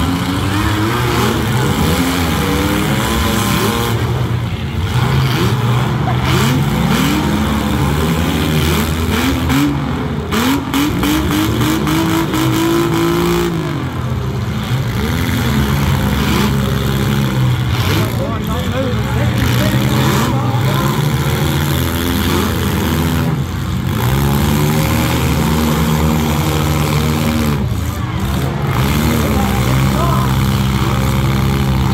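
Several compact demolition-derby car engines revving up and down at once, overlapping, with a few sharp crashes as the cars hit each other.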